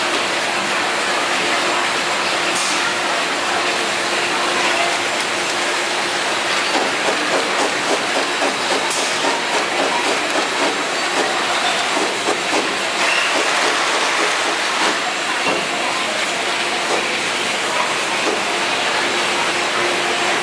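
Automatic bottle packaging line running: the conveyor and capping machine give a steady mechanical din, with plastic bottles clattering rapidly along the conveyor, busiest in the middle stretch.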